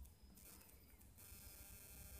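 Near silence: faint room tone with a low, steady background hum.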